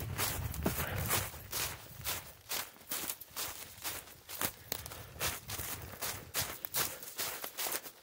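A person's footsteps through dry fallen leaf litter at a brisk pace, about two steps a second.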